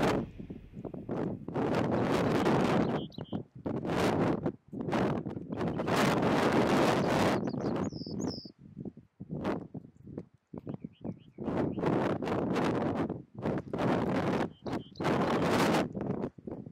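Gusty wind hitting the microphone and rustling the vegetation in repeated rushes of a second or so, the loudest sound. Between them come a few faint, high song notes from a small streaked songbird.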